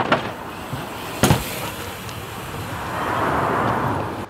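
A mountain bike landing a jump onto a concrete bank with one sharp, heavy impact about a second in, followed by a steady rushing rolling noise that swells toward the end.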